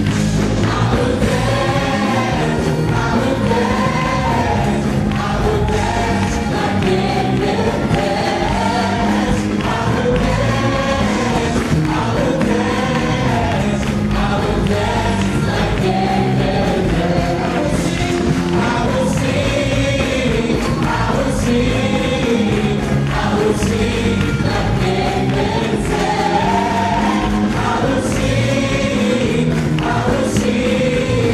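A group of worship singers, men and women, sings a lively gospel-style song together over instrumental backing without a break.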